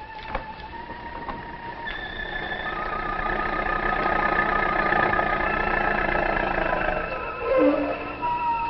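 Dramatic background music: held, slightly wavering high tones over a swelling low rumble that builds from about two seconds in, with a short loud flourish near the end.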